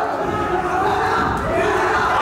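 Crowd of spectators shouting, many voices overlapping at once.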